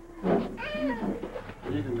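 A cat meowing once, a drawn-out call that rises and then falls.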